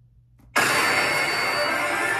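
Near silence, then about half a second in a sudden loud, dense mechanical-sounding noise cuts in and holds steady: a film-trailer sound effect.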